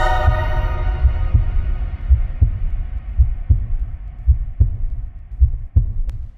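Heartbeat sound effect in the outro of a frenchcore track: low thumps in lub-dub pairs, about one pair a second, while the ringing tail of the music fades out in the first second or two.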